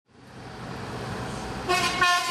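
Road traffic noise fades in, then a vehicle horn sounds near the end as one steady, held tone.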